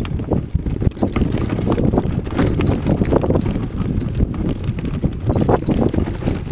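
Mountain bike and its mounted camera jolting over a rough, stony dirt trail: dense, irregular clattering and knocking over a steady low rumble.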